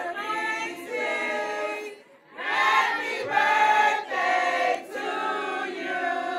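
A group of voices singing together in sustained harmony, with a short break between phrases about two seconds in.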